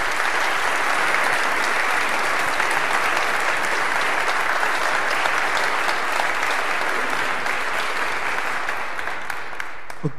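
A congregation applauding steadily, easing off slightly near the end.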